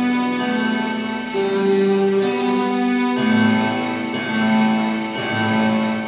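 Improvised keyboard music of layered piano and string tones, in slow, held notes; a lower bass part comes in about three seconds in.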